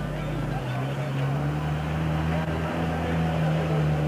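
A steady low motor hum, like an engine running at idle. Its lowest tone shifts slightly about half a second in.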